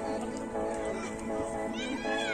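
Background music: a melody of held notes that change every fraction of a second. Near the end, a high gliding sound bends up and then falls.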